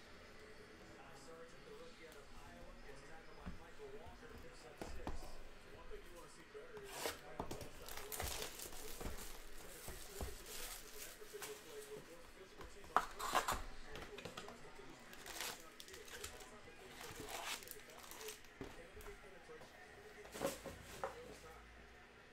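Plastic wrapping on a box of trading cards being torn and crumpled as the box is opened and its packs are taken out, in scattered crinkling crackles with short handling noises; the loudest crackle comes about 13 s in.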